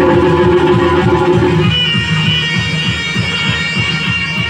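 Live stage accompaniment music: long held melody notes over a fast drum beat, the melody moving from a lower held note to a higher one about halfway through.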